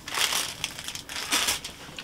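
Plastic packaging crinkling as it is handled, in two short rustles, the second about a second and a half in.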